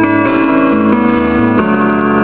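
Live band music from a stage: sustained instrumental notes in a short pause between sung lines, the chord changing every half second or so.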